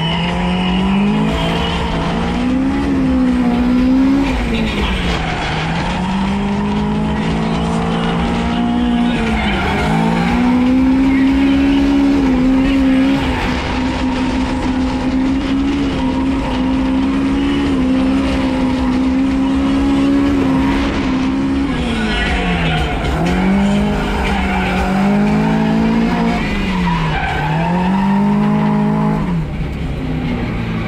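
Toyota AE86 Corolla with a BEAMS four-cylinder engine, drifting on a wet track: the engine revs climb and drop off again and again, and are held high and steady for several seconds through the middle.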